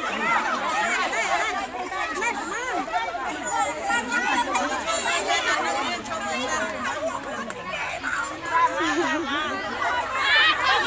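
A group of adults chattering and calling out over one another, many voices overlapping at once.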